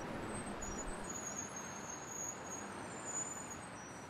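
Outdoor street ambience: a steady haze of distant traffic with a few faint, high chirps, starting to fade out near the end.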